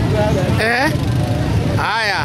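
Voices of people talking close by, with two short spoken phrases, over a steady low rumble.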